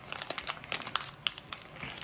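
Small packaging or wrapper crinkling and crackling as it is handled and unwrapped by hand, an irregular string of light crackles.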